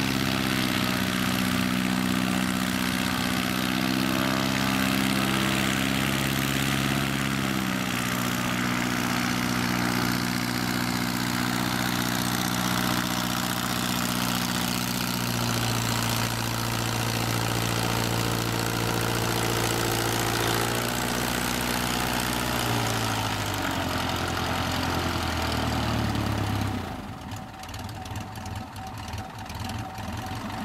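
American Legend Cub floatplane's piston engine and propeller running at idle, its engine speed dropping in steps, then stopping a few seconds before the end.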